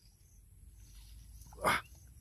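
A man's brief exclamation, "wah", near the end, over a faint low rumble that swells slightly.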